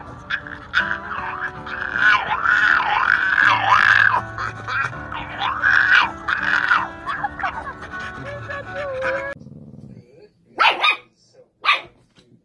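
French bulldog vocalizing in drawn-out, rising-and-falling howls, several in a row, over background music. The music and howls stop suddenly near the end, leaving a few short sharp sounds.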